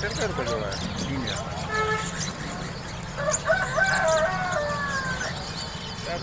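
Many caged birds, cockatiels among them, chirping and calling over one another, with a longer, drawn-out call slowly falling in pitch from about three to five seconds in.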